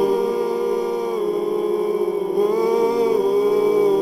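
Live dark-drone music from a Novation Peak synthesizer, Soma Pipe and Soma Cosmos: a sustained, chant-like drone holding one low pitch. Its upper overtones sweep down about a second in and glide back up near the three-second mark.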